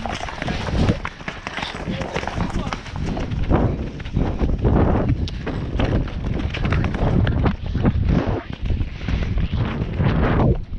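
Hoofbeats of a ridden horse moving at speed over soft, muddy track and grass, with the horse's breathing and tack sounds.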